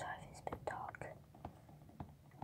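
A person whispering, breathy and unvoiced, mixed with a few small clicks.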